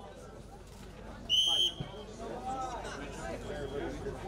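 A referee's whistle: one short, steady, shrill blast about a second in, restarting the bout after a point was scored, over crowd chatter and voices.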